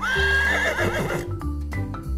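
A horse neighing: one whinny of about a second that starts on a held high note, wavers and trails off, over light children's music.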